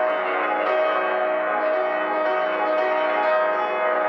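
Grand piano playing classical music: dense chords ringing on under the sustain pedal, with a bell-like resonance and one held note standing out through the texture.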